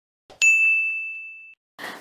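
A single bright notification-bell ding sound effect, struck once about half a second in and ringing out as one clear high tone that fades away over about a second.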